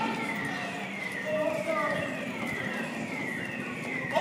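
Emergency-vehicle siren wailing in repeated falling sweeps, about three every two seconds, over faint street voices.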